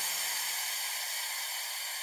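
Electronic white-noise hiss from the tail of a breakbeat track, fading slowly and sitting mostly in the upper range, with a faint low tone dying away near the end.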